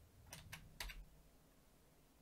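A short run of faint computer-keyboard clicks in the first second.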